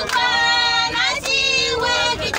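High-pitched singing, holding two long notes with a short break about a second in.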